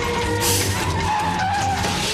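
Movie soundtrack of city traffic with a car skidding, its tyres squealing in one long tone that sinks slightly in pitch, over film score music. A burst of noise comes about half a second in.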